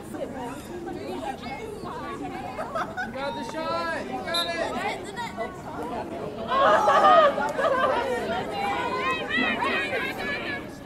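Several voices chattering and calling out, overlapping so that no words stand out, with a louder burst of shouting a little past the middle.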